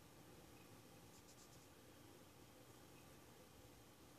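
Near silence: room tone, with a faint, brief scratching about a second in from a fingertip rubbing pressed bronzer powder to swatch it.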